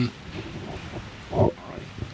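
A person's single short, low, grunt-like vocal sound about a second and a half in, after a brief murmured 'mm-hmm'.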